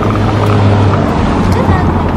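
A car's engine running close behind, a steady low hum.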